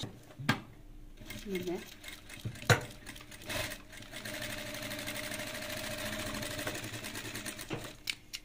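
Sewing machine stitching through thick fur fabric: after two sharp knocks early on, the machine runs steadily for about four seconds from around the middle, then stops. This time it feeds and sews the heavy fabric.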